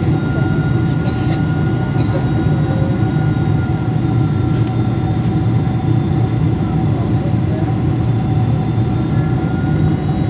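Airliner cabin noise on approach: a steady low roar of engines and airflow, with a faint steady whine running over it.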